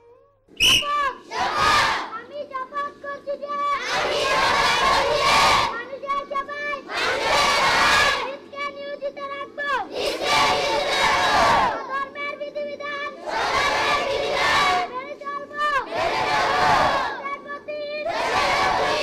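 A large group of schoolchildren chanting together in unison, in loud choruses of a second or two about every three seconds, with a single voice leading between them. It is call and response, typical of a school-assembly oath recited line by line.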